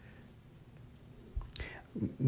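Quiet room with a faint, brief whispered or breathy voice sound and a light click near the end.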